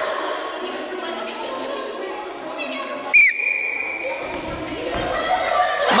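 Indistinct children's chatter and movement echoing in a large gym hall, with one short high squeak about three seconds in that drops in pitch and then holds briefly.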